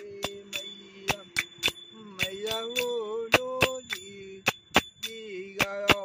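A man singing a devotional bhajan in a wavering, drawn-out voice, accompanied by bell-like metal percussion struck in a steady beat of about four strikes a second, each strike ringing briefly.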